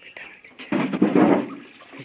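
Water splashing and sloshing as a boatman works a long bamboo pole in the river to push a wooden boat along. It swells for about a second near the middle.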